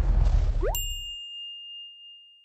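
Chime sound effect: a quick rising glide into one bright ding about three quarters of a second in, ringing out and fading over nearly two seconds, while low background music dies away underneath.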